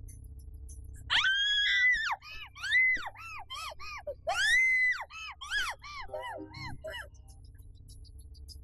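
A woman screaming and crying out in distress: a long high scream about a second in, a run of shorter rising-and-falling cries, a second long scream about four seconds in, then weaker cries trailing off before the end, over low background music.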